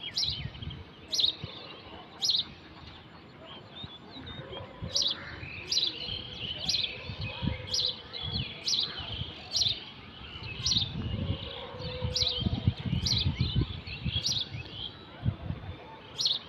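A small bird chirping over and over: short, sharp, high chirps about once a second, over a low rumble that grows stronger in the later part.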